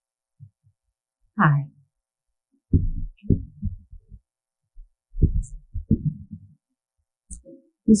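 Handling noise from a stage microphone as it is gripped and adjusted in its stand: a brief falling-pitch sound, then four loud, dull low thumps.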